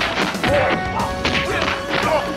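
Kung fu fight sound effects: a quick run of sharp punch and kick hits over background music.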